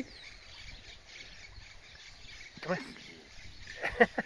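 Quiet farmyard ambience: a faint, steady background with no distinct animal or machine sound, broken by one short spoken word about two and a half seconds in.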